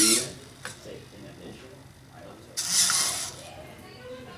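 Hobby servos in a 3D-printed robotic hand whirring in two short gear-driven bursts, one right at the start and one near three seconds in, as the fingers turn into a counting gesture.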